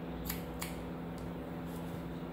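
Haircutting scissors snipping through a child's wet fringe: a few quick, crisp snips, most of them in the first second, as the fringe is point-cut to a textured finish.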